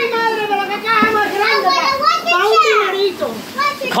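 Excited, high-pitched voices talking and exclaiming over one another, children's among them, with pitch sliding up and down near the middle.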